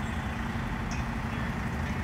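Steady low rumble of an idling vehicle engine in street traffic.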